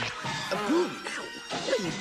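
Animated-film soundtrack: background music with a crash sound effect and short gliding squeals or cries of a cartoon character.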